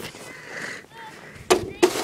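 Rustling handling noise close to the microphone, broken late on by two sharp knocks about a third of a second apart, as the camera is brought down to a plastic sled on snow.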